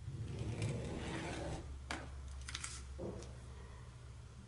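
Pen drawing a line on paper along a metal ruler: a faint scratching for about the first second and a half, followed by a few light clicks as the pen comes away.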